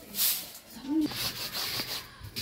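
Fibre broom swishing over a concrete floor in quick strokes, giving way near the end to a steadier rubbing of cloth scrubbed on a stone washing slab.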